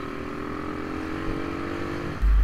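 Motorcycle engine running at a steady pace while riding, a constant hum over road and wind noise.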